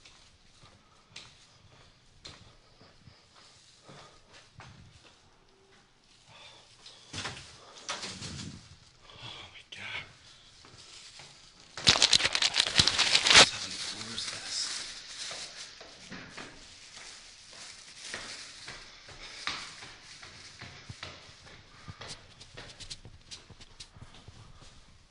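A man's breathing and footsteps as he walks and heads up the stairs, with a loud rattling clatter lasting about a second and a half midway through.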